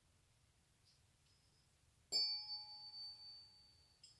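Tuning fork struck once with a ball-tipped activator about two seconds in, ringing with a clear, steady tone that slowly fades.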